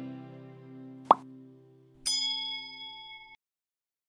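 A held guitar chord fades out, then a short sharp pop sounds about a second in: the click of a subscribe button. A second later a bright bell chime of a few steady tones rings for about a second and cuts off suddenly.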